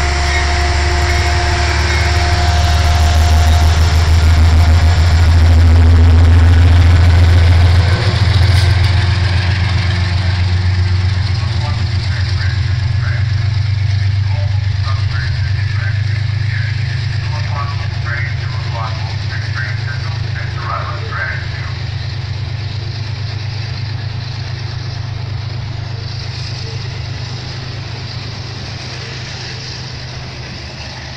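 An Amtrak diesel locomotive pulls out of the station past the platform, its engine a loud low drone that shifts note about eight seconds in. Its passenger cars then roll by and the sound slowly fades as the train leaves.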